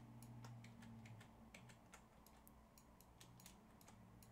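Faint computer keyboard keys tapped many times in quick, uneven succession, as the sculpt is undone stroke by stroke back to a plain sphere. A low hum stops about a second in.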